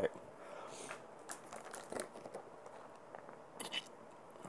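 Faint crinkling and clicking of a plastic bottle being handled and its cap twisted off, with a brief louder rustle a little before the end.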